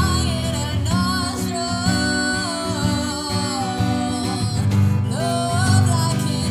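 A woman singing a slow melody in long held notes that slide between pitches, over a guitar accompaniment.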